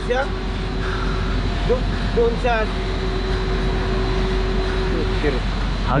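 Ballast water rushing steadily and strongly into a ship's ballast tank, with a low hum under it. The flow is so strong it is as though there were no valve: the valve is passing instead of shutting off.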